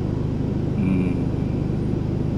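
Car engine idling steadily while the car stands still, heard from inside the cabin as an even low rumble.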